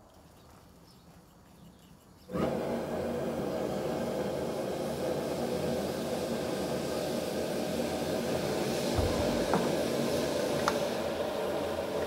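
Quiet at first, then about two seconds in a gas burner under a wok of boiling braising liquid starts up, burning with a steady roar that holds.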